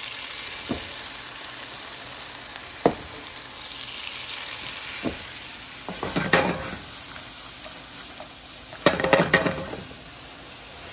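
Grenadier fillets sizzling steadily in oil in a frying pan, with a few single clicks. About six seconds in, and again near the end, there are bursts of clatter from a pan of fava beans and mushrooms being stirred.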